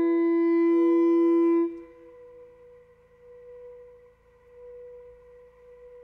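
Contemporary ensemble music: a loud, steady held woodwind note that cuts off abruptly under two seconds in, leaving a quieter held higher tone that swells and fades gently.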